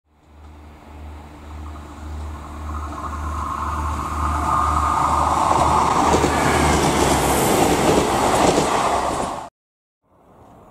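A train approaching and growing steadily louder, with a low rhythmic throb at about two beats a second under rising running noise. The sound cuts off abruptly near the end.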